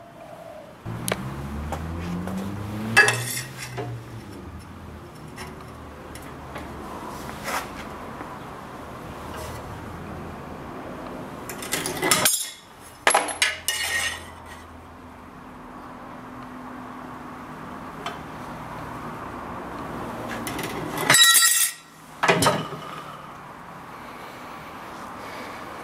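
Sharp metallic clanks and clinks from a hand-lever bench shear cutting small pieces of steel plate, with the steel pieces being handled. The clanks come in short clusters, and the loudest fall about halfway through and again near the end.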